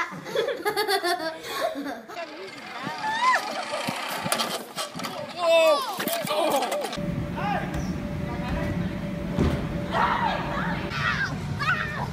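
Excited voices, shrieks and laughter from people watching a mishap, followed about seven seconds in by a steady outdoor rumble like wind on the microphone, with a few more voices over it.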